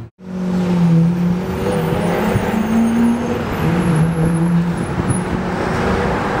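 Car engine running in city street traffic over a steady hiss of road noise; its note rises in pitch about two seconds in, then settles back.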